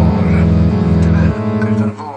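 Indie rock band music with deep bass notes and guitar, thinning out and dropping in level about a second and a half in.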